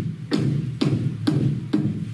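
A run of evenly spaced percussive knocks, about two a second, each sharp at the start and followed by a short low ring.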